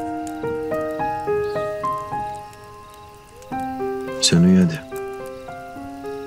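Soft, slow piano music with single notes and sustained chords. About four seconds in, a brief, loud vocal sound with a bending pitch rises above the piano.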